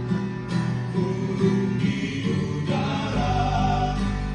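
A mixed group of men and women singing an Indonesian worship song together into microphones, accompanied by an acoustic guitar. A deep bass tone comes in about three seconds in.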